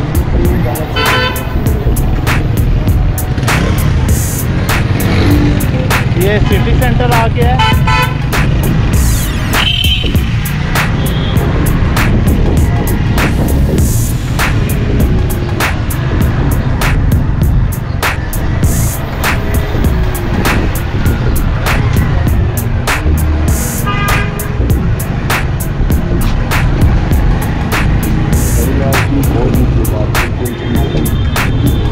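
Busy street traffic of cars, motorcycles and auto-rickshaws: a constant engine and road rumble with several short horn toots, about a second in, around eight seconds and around twenty-four seconds. Background music with a steady beat plays over it, and voices can be heard.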